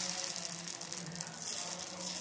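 Wheat-flour chila batter sizzling with a steady crackling hiss on a hot, lightly oiled iron tawa while a ladle spreads it.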